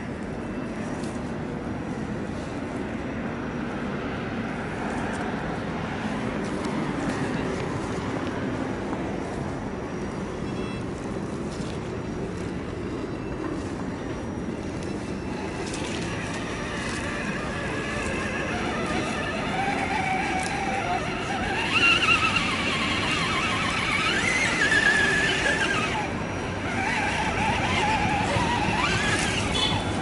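Electric motor and gearbox of a radio-controlled scale Defender crawler whining, the pitch rising and falling as the throttle is worked, mostly in the second half and loudest near the end.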